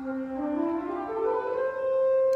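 Pipe organ playing an ascending C major scale, one note at a time, rising step by step through one octave from middle C to the C above. The top note is held.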